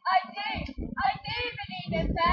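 A girl singing in short, wavering phrases with brief breaks between them.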